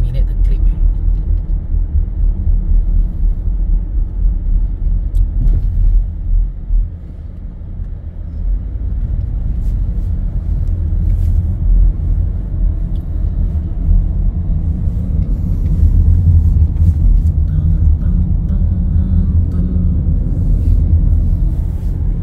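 Low, steady rumble of a moving car's engine and tyres heard from inside the cabin, dipping briefly about a third of the way in and growing louder in the last few seconds.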